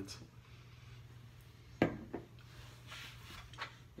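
Quiet room tone with a steady low hum, broken by one sharp click a little under two seconds in.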